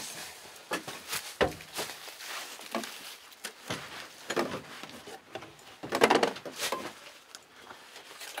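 Irregular clicks, knocks and short hissy squirts as a hand spray bottle is worked at the carburettor of a cold, stopped snowmobile engine to prime it; the loudest clatter comes about six seconds in.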